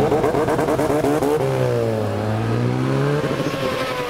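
Endurance race motorcycle engine running and revving in the pit box during a pit stop, its note dipping and then rising again about halfway through.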